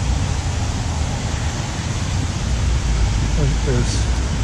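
Wind on the microphone: a steady rushing noise with an uneven low rumble.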